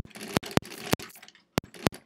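Sewing machine stitching slowly with a large needle and thick thread, each needle stroke a separate sharp click. There are about seven of them at an uneven pace, with a short pause a little past halfway.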